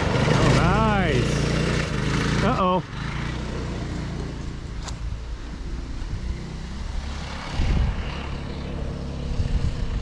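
Go-kart's small engine running close by, its pitch rising and falling twice in the first three seconds, then dropping suddenly to a fainter, steady hum.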